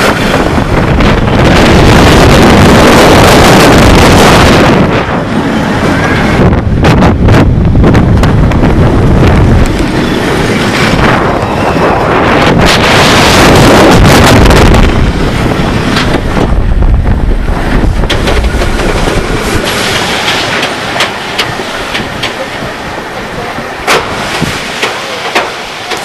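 Wind rushing over the microphone with the rumble of X2's Arrow 4th Dimension coaster train running on its track at speed. It surges loudest twice, then eases off as the train slows, with a few sharp clunks near the end.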